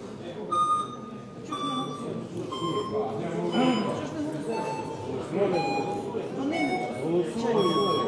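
An electronic voting system sounding a slow series of electronic tones, about one a second, mostly stepping down in pitch, while the vote is open. Voices murmur in the hall underneath.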